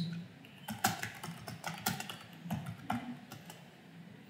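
Computer keyboard being typed on: a run of quick, irregular keystrokes entering a short phrase.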